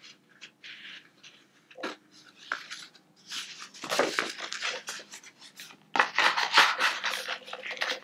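A card-covered Field Notes notepad being pushed into the snug sleeve of a leather wallet, with paper and card rubbing and scraping against the leather. There is faint handling at first, then bursts of rustling about three seconds in, and the scraping grows loud and dense over the last two seconds.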